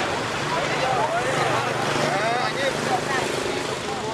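Road traffic: a vehicle driving past, with a steady low engine hum through the middle, under people's voices chattering.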